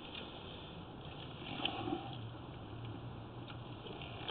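Faint rubbing and handling noise as the lens of a sewer inspection camera head is wiped clean by hand, with a couple of small clicks about halfway through and a low steady hum underneath.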